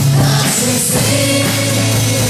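Live Christian worship band: several voices singing together over guitars, keyboard and drums, amplified through a PA.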